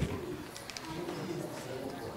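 A quiet, low-pitched human voice making drawn-out, wavering sounds rather than clear words.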